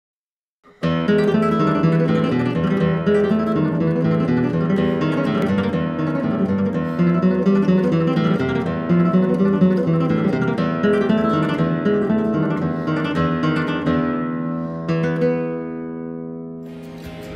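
Acoustic guitar music, starting about a second in and playing on at a steady level.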